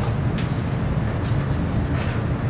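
Steady low rumble of background room noise, with two faint short sounds about half a second and just over a second in.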